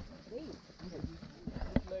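Footsteps of several hikers on a dry dirt trail, mixed with the group's chatter, with a few sharp knocks in the second half.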